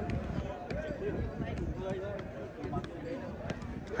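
Football being played off a player's foot: several sharp thuds of boot on ball, spaced irregularly. People talk in the background.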